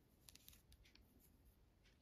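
Near silence, with a few faint, short ticks and rustles of a metal crochet hook working yarn through the stitches.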